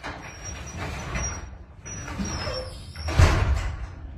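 Sectional overhead garage door closing on its opener, running with a rumble and an intermittent thin high squeal, then landing with a thud about three seconds in.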